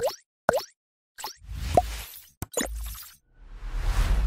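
Logo-animation sound effects: two quick plops with falling pitch half a second apart, then a swelling whoosh with a short rising tone, a couple of sharp clicks and a low thud, and another whoosh building near the end.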